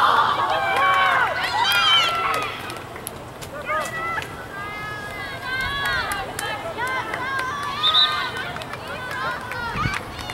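Several voices shouting and calling out across an open soccer field, loudest in the first couple of seconds, then calls on and off.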